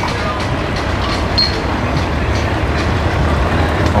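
Outboard boat motor idling: a steady low rumble.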